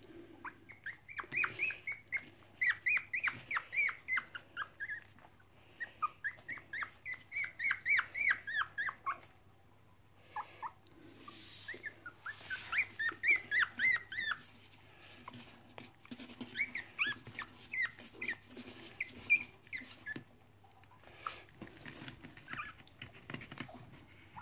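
Three-week-old Toy Fox Terrier puppy crying: quick runs of short, high-pitched squeaks and whimpers, about four a second, broken by pauses and growing sparser near the end.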